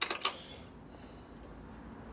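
A few quick, sharp metallic clicks from small steel clutch parts being handled and fitted, then quiet shop room tone.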